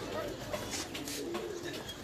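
Domestic pigeons cooing in low, held notes, with a laugh and murmuring voices alongside.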